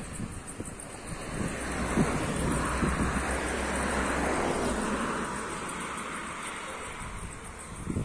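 A car driving past, its tyre and engine noise swelling to a peak about four seconds in and then fading away.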